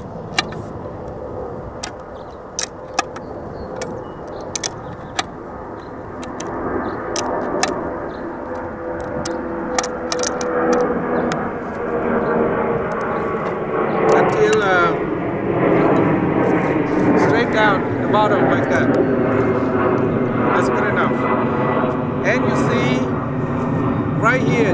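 Adjustable wrench tightening a galvanized steel fitting onto a threaded pipe, with scattered sharp metal clicks and knocks as it turns. A steady engine drone in the background swells and is loudest in the second half.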